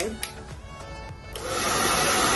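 Vega hair dryer switched on about a second and a half in: a sudden rush of blowing air that then runs steadily, set to normal air rather than heat.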